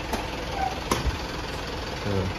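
A minibus engine idling steadily, with one sharp click a little under a second in.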